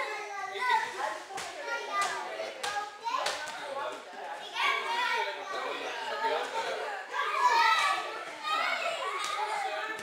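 Children's voices and chatter in a large hall, overlapping and continuous, with several short thuds of bodies and bare feet on the judo mats.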